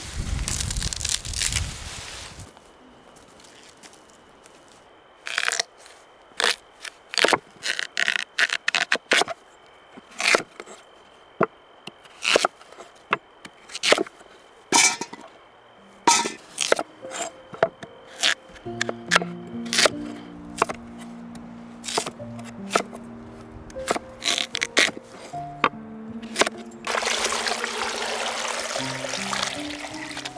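Beet roots torn up out of the garden soil with a rustle, then a long run of sharp knocks as a knife cuts beets on a wooden board and the pieces drop into a steel pot. Near the end, water is poured into the pot with a rushing splash.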